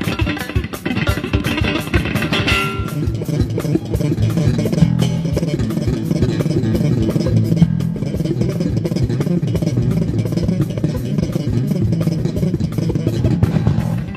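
Live band music: electric bass guitar playing a busy line over drum kit and electric guitar, with the bass filling the low end more heavily from a few seconds in.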